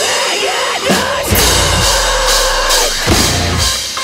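Live drum kit playing over a metal backing track, with cymbal crashes and separate heavy hits. The dense full-band sound drops away at the start, leaving scattered strikes and a low held note.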